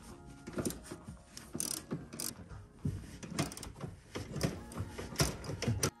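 Hand socket ratchet clicking in short, irregular bursts while undoing the bolts that hold a car seat to the floor.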